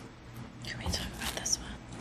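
Quiet whispered speech, starting about half a second in.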